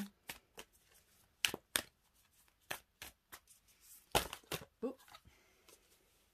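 A Starseed Oracle card deck being shuffled by hand: a string of separate crisp card snaps and slaps, the loudest about four seconds in.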